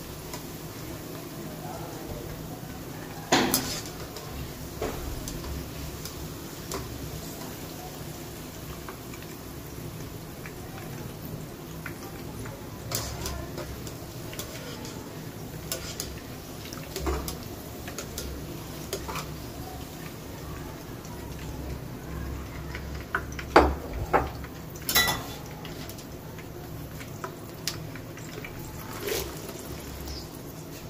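A perforated skimmer scoops fried okra (bhindi) out of hot oil in a wok and is knocked against the pan now and then to shake off excess oil, giving sharp clacks, loudest in a cluster about two-thirds of the way in. Under them is the steady sizzle of the frying oil.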